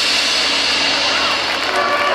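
Marching band cymbals ringing on in a loud, steady wash. Brass notes start to come in near the end.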